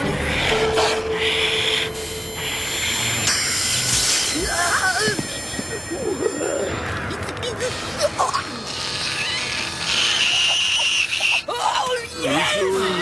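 Cartoon magic sound effects for a glowing-nose beam against ice magic: several long hissing blasts, with wordless strained cries and grunts around the middle and music underneath.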